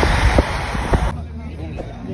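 Wind buffeting the phone's microphone outdoors, a loud rumbling rush that cuts off abruptly about a second in, giving way to quieter background chatter of diners' voices.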